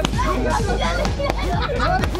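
A crowd of children shouting and cheering over one another, with two sharp pops about a second and a quarter apart: balloons bursting.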